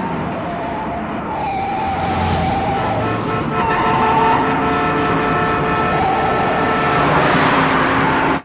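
Car-chase soundtrack of a 1971 Pontiac LeMans driven hard in city traffic: the engine runs at high revs with road noise, and a car horn is held on in long steady blasts through most of the stretch.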